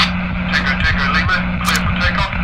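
Indistinct talking over a steady low hum that drops out briefly now and then.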